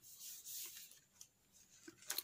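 Faint rubbing of a hand sliding over the hard ABS plastic shell of a bicycle helmet in the first second, followed by a few soft handling sounds as the helmet is turned.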